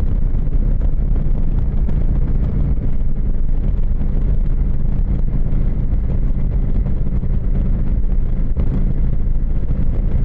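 Motorcycle engine running at a steady cruising speed, an even low drone with no revving, mixed with wind noise on the microphone.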